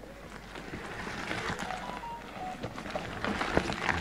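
An electric mountain bike riding over a rooty dirt trail: the knobby tyres crunch and knock over roots and stones, growing louder as the bike comes up to and passes close by.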